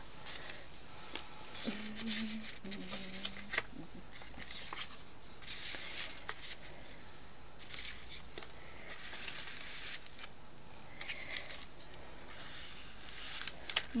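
Paper and cardstock tags rustling and tapping faintly as they are handled and tucked into a card folder's pockets, with a few small clicks. Two short hums from a voice about two seconds in.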